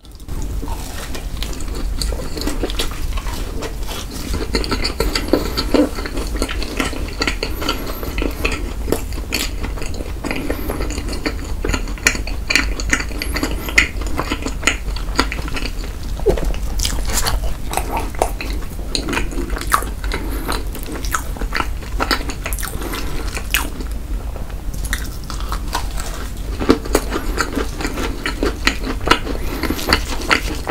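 Close-miked chewing of a soft, cream-filled dacquoise: many irregular wet clicks and smacks of the mouth, over a steady low hum.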